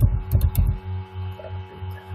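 Computer keyboard keys clicking as a word is typed, over a steady electrical hum that pulses about three times a second. The clicks and thumps cluster in the first second.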